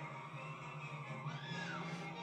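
Orchestral film score from a 1930s animated film's frightening-forest scene, played through a television and picked up in the room, with a high tone that glides up and back down in the second half.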